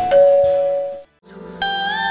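Doorbell chime, a high note followed by a lower one (ding-dong), fading out within about a second.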